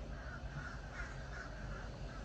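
A bird cawing faintly, a string of short calls, over a low steady background rumble.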